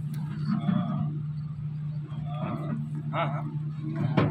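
Indistinct voices of several people talking in a small room, over a steady low hum.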